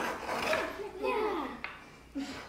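Children's voices with the light scraping of a small finger plane shaving the arching of a wooden violin plate.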